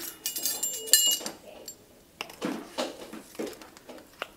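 Measuring spoons clinking together as they are picked up: a few sharp, ringing metallic clinks in the first second or so, then softer handling knocks.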